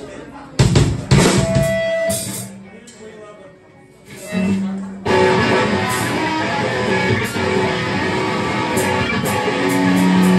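Live rock band starting a song: a few drum hits and ringing single guitar and bass notes, then the full band of drum kit, electric guitars and bass guitar comes in together about five seconds in and plays on steadily.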